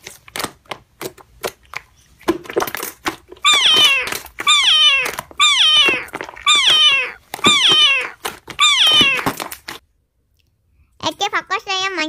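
A cat meows six times in a row, each meow falling in pitch, about one a second, for the framed cat crying. In the first two seconds wet slime clicks and pops as hands squeeze it.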